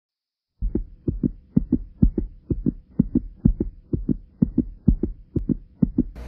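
Heartbeat sound effect: paired lub-dub thumps, about two beats a second, starting just over half a second in, with a faint steady hum underneath.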